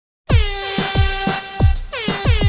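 Electronic manele remix intro that comes in about a quarter second in. A horn-like synth chord bends down in pitch and then holds, over deep kick drums striking about one and a half times a second.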